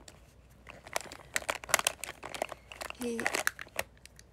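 Close-up crinkling and clicking right at the microphone, a rapid run of small crackles about a second in, broken by a short vocal sound near the end.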